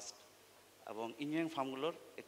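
A man's voice over a microphone: a short run of pitched syllables starting about a second in, after a brief pause.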